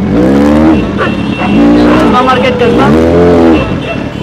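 Motorcycle engine revved three times in quick succession, each rev rising and then falling in pitch.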